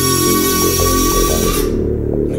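Background music over the whine of the Arris Lander-X3's electric retract mechanism lowering the landing skid legs. The whine cuts off suddenly about one and a half seconds in, as the legs reach the down position.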